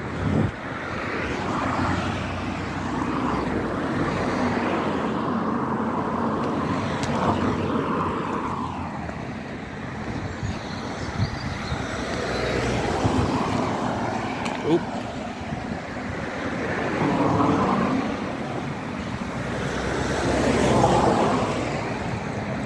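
Outdoor rushing noise, like road traffic going by, that swells and fades every few seconds, with a few short knocks.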